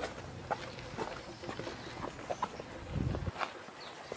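Footsteps on a concrete sidewalk, irregular light taps about two a second, with a brief low rumble about three seconds in.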